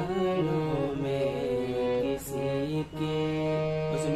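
Harmonium played by hand: a slow melody of held, reedy notes stepping from pitch to pitch, with brief breaks about two and three seconds in.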